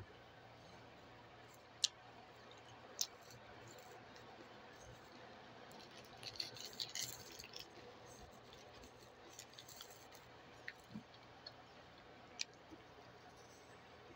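A person quietly chewing a meat stick, mostly near silence, with a few sharp clicks, the loudest about two and three seconds in, and a brief rustle of handling around six to seven seconds in.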